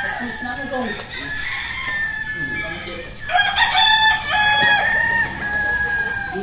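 Several gamecock roosters crowing, with faint crows in the first few seconds and overlapping, louder crows for about two seconds from about three seconds in.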